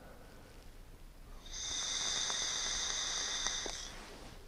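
A drag on an e-cigarette: a steady, high hissing whistle of air drawn through the atomizer as the coil fires. It starts about one and a half seconds in and lasts a little over two seconds.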